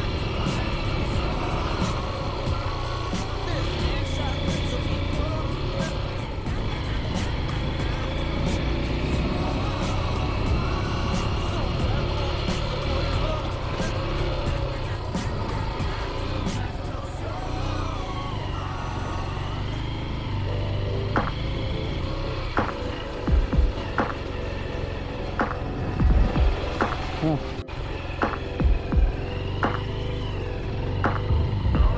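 Enduro motorcycle engine running as the bike rides over a dirt trail, with several heavy thumps in the last third as the bike bounces over bumps.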